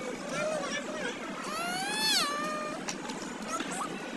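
A long, high, meow-like cry about a second and a half in that rises and then falls in pitch, among short snatches of voice.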